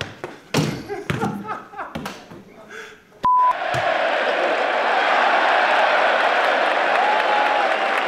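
A football being kicked and kneed in a gym, several thumps about half a second apart. About three seconds in, a short high beep, then the steady noise of a large stadium crowd.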